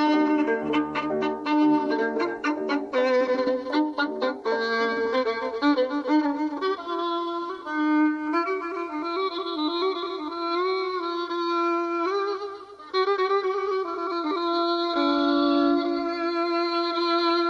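Persian classical music in dastgah Mahur. Quick plucked-string notes in the first few seconds give way to a solo violin playing sustained, sliding, ornamented phrases.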